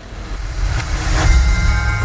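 Cinematic title sound effect: a deep, rumbling swell that grows steadily louder through the two seconds, part of the title-sequence music.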